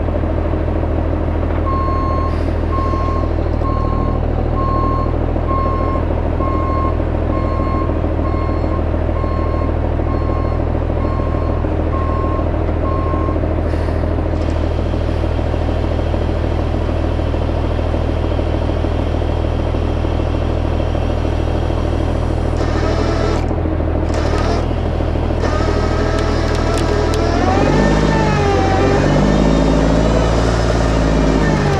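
Kenworth C500 bed truck's diesel engine running steadily while a reverse alarm beeps about once a second, a dozen times, then stops. Near the end the engine revs, its pitch rising and wavering.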